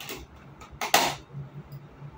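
Thin clear plastic clamshell cake box being handled and prised open, its lid crackling a few times, loudest about a second in.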